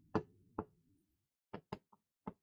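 Five light, sharp taps of a pen on a writing surface while handwriting: two about half a second apart near the start, then three in quick succession near the end.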